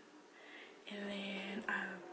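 A woman's voice, hoarse and half-whispered, speaking a few indistinct words about a second in, after a short quiet pause; the hoarseness comes from a cold that is taking her voice.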